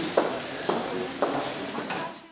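Ambient sound of a hall with a seated audience: indistinct voices and rustling, with three short knocks about half a second apart.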